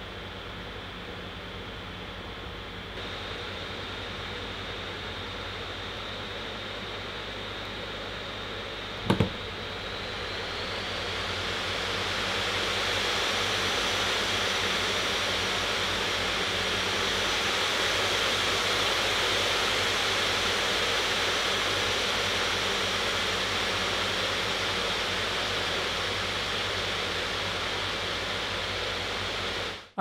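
Alienware m15 R2 gaming laptop's cooling fans blowing a steady rushing hiss under a combined CPU and GPU stress test, with one sharp click about nine seconds in. The fans then spin up over a few seconds with a faint rising whine as full speed mode takes hold, and stay loud, easing off slightly near the end.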